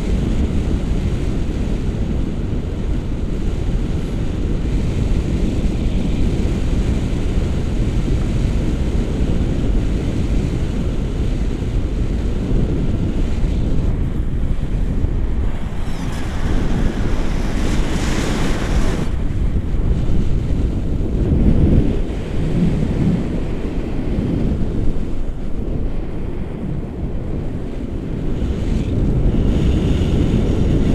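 Airflow of paraglider flight buffeting an action camera's microphone: a loud, steady low rumble of wind noise. About sixteen seconds in it turns brighter and hissier for a few seconds, then settles back to the low rumble.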